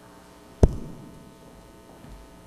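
A single loud thump a little over half a second in, trailing off in a short echo, over a faint steady electrical hum.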